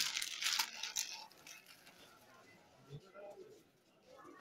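A plastic jewellery packet crinkling and rustling as a necklace is taken out of it, loudest in about the first second and then dying away to quiet handling.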